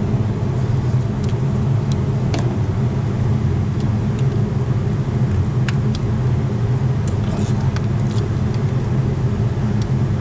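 A steady low machine hum runs throughout, with a few faint, short clicks of hand tools as hands work in the engine bay.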